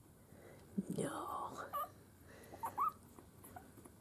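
Two-week-old miniature schnauzer puppies giving a few short, high squeaks, a couple of them close together near three seconds in.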